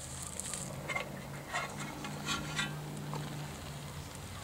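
Aluminium USGI mess kit lid clinking lightly against its pan a few times as it is lifted off, over a steady low hum.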